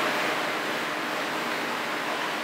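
Steady, even hiss of room noise in a pause between speech, with no distinct events.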